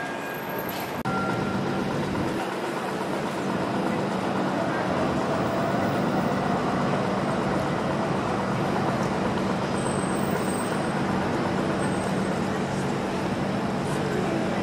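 Busy city-street traffic noise with a steady low engine hum, stepping up suddenly about a second in and then holding steady.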